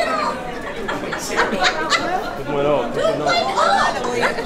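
Crowd chatter: many people talking at once.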